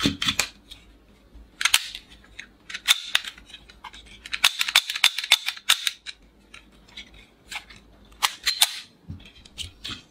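Sharp plastic clicks from a toy revolver's mechanism as it is worked by hand, the cylinder snapping shut and open and the hammer and trigger clicking. The clicks come in several quick runs, the longest about halfway through.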